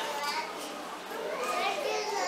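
Children's voices chattering, getting louder in the second half.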